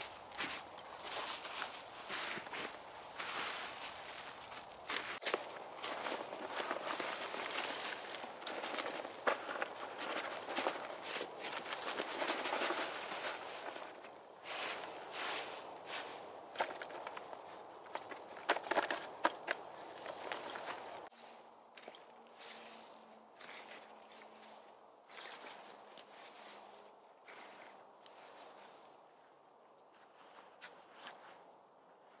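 Dry fallen leaves rustling and crunching as they are scooped by gloved hands into a cloth bag and tipped onto a shelter roof, with footsteps in the leaf litter. The rustling grows fainter after about twenty seconds.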